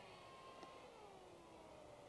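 Faint whine of an RC park jet's small brushless outrunner motor and three-bladed carbon prop, sliding slowly down in pitch as the plane comes in to land.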